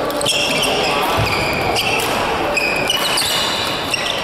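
Badminton rally: sneakers squeaking sharply and repeatedly on a synthetic court mat as the players move, with sharp racket hits on the shuttlecock in between.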